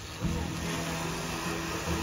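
Zipline trolley pulleys whirring along the steel cable as a rider launches off the platform, with a jolt about a quarter-second in, a steady rushing whir after it, and another jolt near the end.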